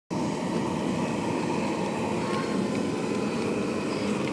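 Steady rushing sound of a high-pressure LPG gas burner burning under a large pot of neem-leaf decoction.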